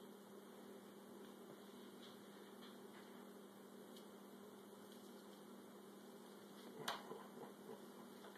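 Near-silent room tone with a steady low hum, broken by one sharp click near the end: metal tongs knocking while pulling apart a smoked turkey in a foil pan.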